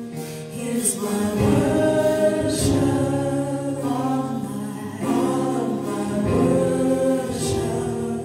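A small group of women singing a gospel worship song in harmony over a keyboard, holding long notes.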